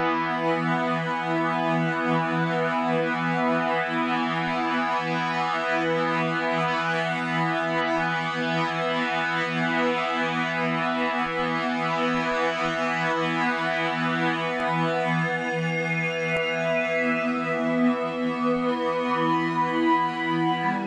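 Harmor synth pad from FL Studio's AeroPad Patcher preset holding one sustained chord as a thick stack of steady tones. Its upper partials shift and shimmer partway through as the harmonizer shift and gap settings are changed.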